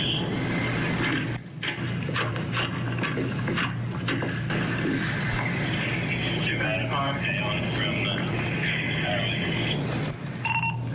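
Police body-camera audio: indistinct voices of first responders over constant background noise and a steady low hum.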